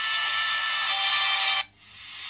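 Pitched-up jingle from a Nissan logo ident, a dense high sound with several held tones that cuts off suddenly about one and a half seconds in.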